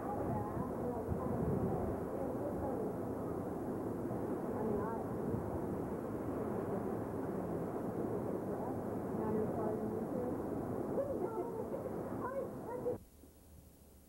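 Hurricane-force wind gusting through the trees and buffeting the camcorder microphone, a dense rushing noise that cuts off abruptly near the end.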